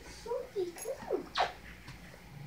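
A dog whining in a series of short pitched whimpers, the loudest about a second and a half in.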